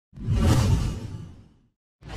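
A whoosh sound effect: a single swell that peaks about half a second in and fades away over the following second.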